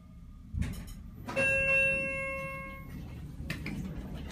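A 1986 Westinghouse hydraulic elevator's chime sounds a single bell-like ding that rings out and fades over about a second and a half. A thump comes just before it, and light clicks follow near the end.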